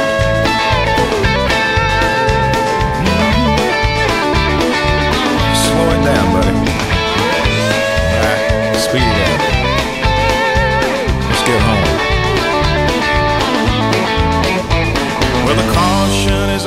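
Instrumental break of a country-rock band recording: an electric guitar lead playing sustained, bending notes over bass and drums with a steady beat.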